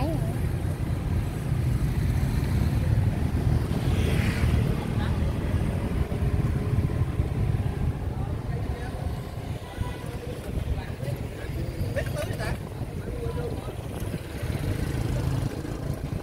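Steady low rumble of street traffic, with motor vehicles passing.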